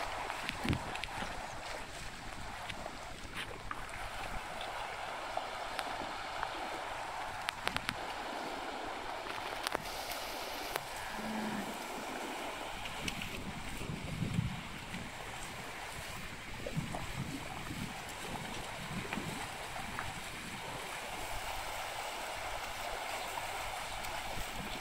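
Shallow river running steadily over stones, with a few faint clicks and a short low sound about halfway through.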